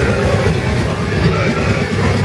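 Death metal band playing live: heavily distorted electric guitars and bass over fast drumming, a dense, loud wall of sound.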